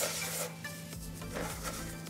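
A gloved hand rubbing dry bath-bomb powders through a stainless steel mesh sieve, a soft, scratchy rubbing of powder on metal mesh. Faint background music runs underneath.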